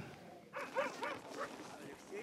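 Faint dog yips: several short rising-and-falling calls in quick succession, starting about half a second in.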